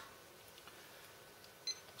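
Near silence, then near the end a single short high electronic beep from a digital timer as its button is pressed.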